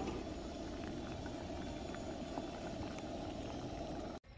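Saucepan of napa cabbage broth at a rolling boil on a camp stove burner, bubbling steadily with the glass lid lifted off.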